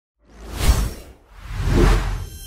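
Two whoosh sound effects over a deep low rumble, as in an animated logo reveal: the first swells and fades just before a second in, the second builds up toward the end.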